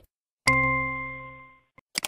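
A single bell-like chime from the e-learning software, starting about half a second in and fading away over about a second: the correct-answer signal as a tick marks the chosen picture. A faint brief click follows near the end.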